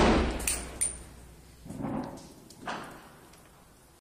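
The echoing tail of a scoped rifle shot fired just before, dying away over the first half second. Two short, ringing metallic clinks follow, then two duller, softer bangs about two and three seconds in.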